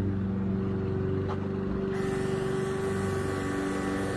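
Small built-in compressor of a cordless airbrush sprayer humming steadily. About halfway through, a hiss of air joins it.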